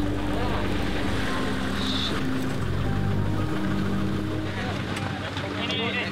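Low background music of sustained held notes that shift pitch every second or so, under faint outdoor noise.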